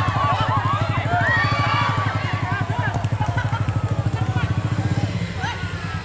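Crowd voices calling and chattering over a small engine idling steadily, its low firing pulses even throughout; the engine's note shifts slightly about five seconds in.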